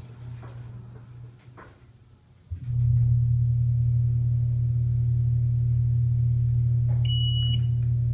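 MontgomeryKONE in-ground hydraulic elevator starting its descent: a loud steady low hum comes on suddenly about two and a half seconds in and holds. About seven seconds in, the floor-passing chime sounds once as a short high beep.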